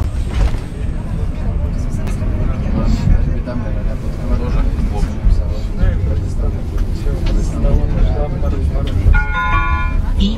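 Tram running, heard from inside the car: a steady low rumble of wheels and traction, with faint passenger voices. Near the end a chime of several steady tones sounds, the signal that comes before the automated stop announcement.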